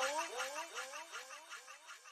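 An echoing sound effect: a short rising pitched glide repeating about four times a second, each repeat quieter, fading away.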